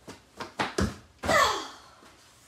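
A boy's quick running footsteps on a bedroom floor, about four steps growing louder, then a loud effortful vocal cry falling in pitch as he leaps.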